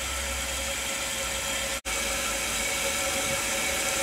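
Toilet tank refilling: a steady hiss of the fill valve with water running into the tank, broken once by a split-second dropout a little under halfway through.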